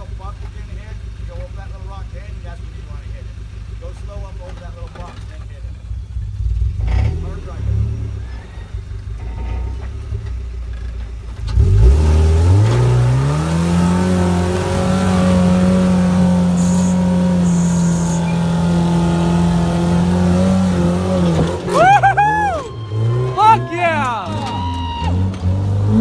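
Lifted rock-crawling pickup truck's engine running low, then revved hard about twelve seconds in and held at high revs for roughly nine seconds while the tires spin on the rock face. The climb needs the engine kept up in its power band. Near the end the revs drop and people shout and whoop.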